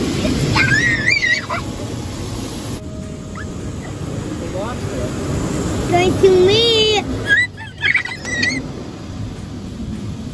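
Automatic car wash heard from inside the car cabin: a steady, muffled rush of water spray and machinery against the body. A child's high-pitched squeals rise and fall over it about a second in and again around six seconds in.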